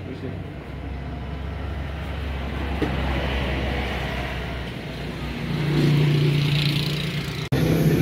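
A motor vehicle's engine running close by: a low rumble that grows louder over the first few seconds, then a steady low hum, cut off suddenly near the end.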